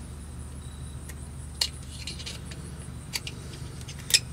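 Small metal clicks and scrapes of a pick working against a steel hydraulic cylinder gland as the cup seal's backup ring is worked out of its groove. There are a few separate clicks, the sharpest about a second and a half in, over a steady low hum.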